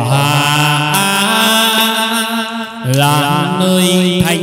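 Chầu văn ritual singing: one voice holds long, drawn-out notes, steps up in pitch about a second in, and breaks off briefly near three seconds before holding another note.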